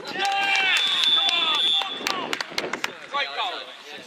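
Men shouting loudly on a football pitch: long drawn-out wordless yells through the first two seconds, a few sharp knocks after them, and a shorter shout a little past three seconds.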